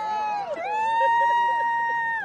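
An audience member's long, high-pitched cheering scream. After a brief dip it starts again about half a second in and is held steady on one pitch, while other voices cheer lower beneath it.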